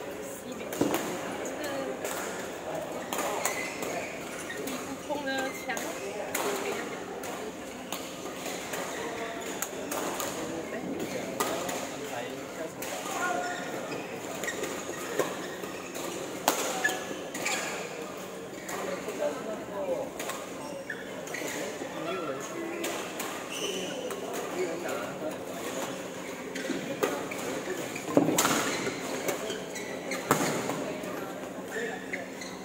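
Badminton rally in a large hall: racket strikes on the shuttlecock at irregular intervals, with a steady murmur of indistinct voices behind.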